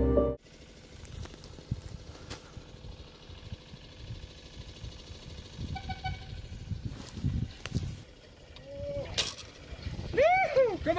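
Music cuts off right at the start. Then faint outdoor sound on a forested slope: an uneven low rumble of wind on the microphone with a few light cracks and knocks, a short high chirp about six seconds in, and a man's voice starting just before the end.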